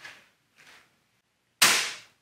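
Bug-A-Salt 3.0 spring-powered salt gun firing a single shot about one and a half seconds in: a sharp crack that tails off over about half a second.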